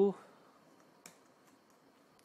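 Low room noise with a single short, sharp click about a second in, a computer click made while entering values in a spreadsheet.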